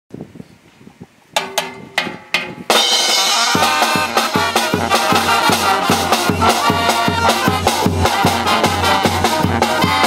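Mexican banda brass band (trumpets, trombones, sousaphone, snare and bass drums) starting a piece: a few drum strokes about a second and a half in, then the whole band comes in loud just before three seconds, with a steady bass beat.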